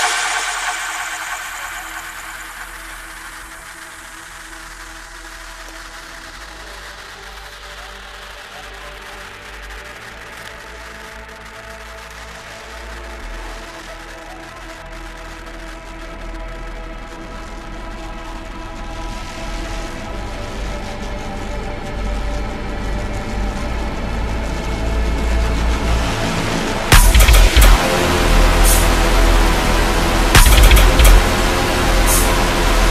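Tearout dubstep track in a breakdown: a quiet bed of sustained synth chords swells slowly over some twenty seconds. About three seconds before the end, the heavy bass of the drop hits again.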